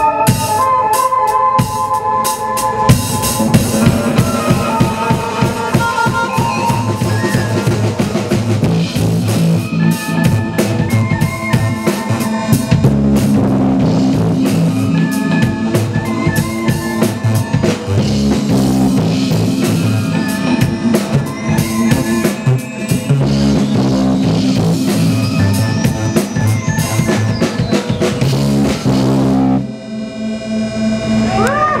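Live band playing an instrumental passage on drum kit, electric guitar, bass and keyboards, with steady drum hits. A tone rises in pitch in the second half, and the song ends near the end.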